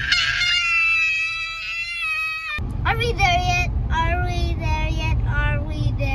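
A young child's long, high-pitched shriek, held steady for about two and a half seconds. Then children's voices shout short phrases over the low rumble of a car.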